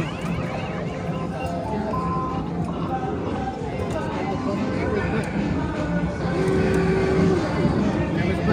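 Busy arcade din: overlapping electronic game tones and jingles at scattered pitches, over a steady background of crowd chatter.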